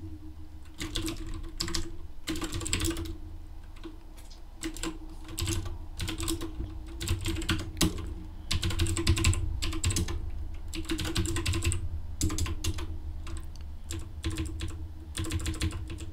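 Computer keyboard typing, in irregular flurries of keystrokes with short pauses between them.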